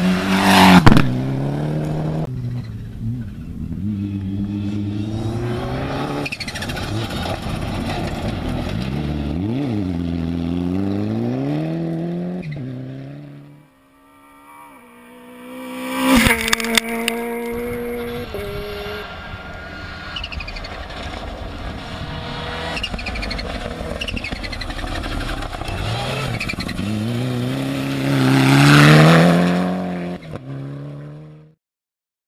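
Rally cars driven at full throttle on a gravel stage, one after another. Their engines rev up and drop back at each gear change. A loud pass comes about a second in, the sound cuts out briefly near the middle, another car bursts in loudly just after, and a further car swells up near the end.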